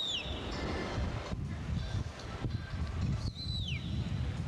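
Outdoor street ambience with a steady low rumble, and twice a high whistled note about half a second long that drops in pitch at its end: once at the start and once about three seconds in.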